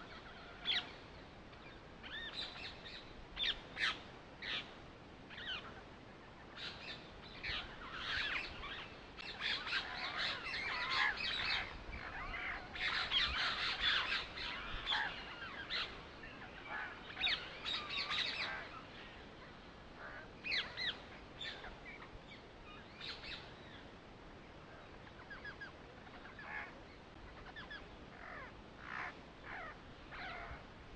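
Birds chirping in many short calls, busiest in the middle stretch and thinning out towards the end.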